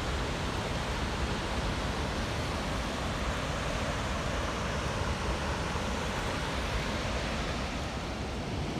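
Steady rushing of water released through a dam gate and churning in the river below.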